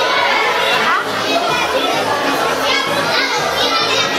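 Audience of many children chattering and calling out at once in a hall, a loud continuous babble of young voices.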